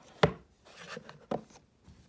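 Hands handling a jewelry box and its plastic sleeve on a desk: two sharp knocks, one just after the start and one a little past halfway, with light handling noise between.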